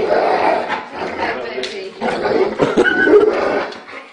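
A large dog making vocal sounds, mixed with people's voices.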